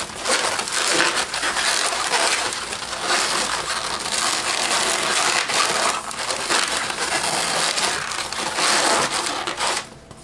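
Latex 260 modelling balloons squeaking and rubbing against each other as they are twisted and wrapped together, a continuous rubbing noise with brief lulls about six and eight seconds in.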